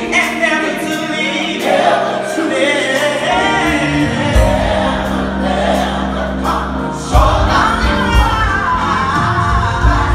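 A gospel choir singing live with instrumental accompaniment. The low bass end of the accompaniment drops back for the first few seconds, then comes back in about four seconds in and fully about seven seconds in.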